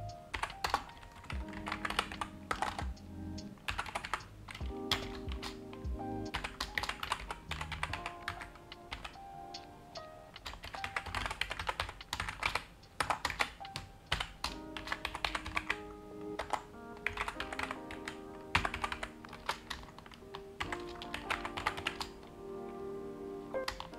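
Keystrokes on a computer keyboard, typed in quick irregular runs, over soft background music.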